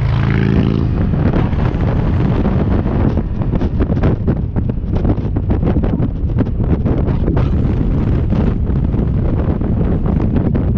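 Heavy wind buffeting the microphone on a moving motorcycle, over a steady low rumble from the engine and road.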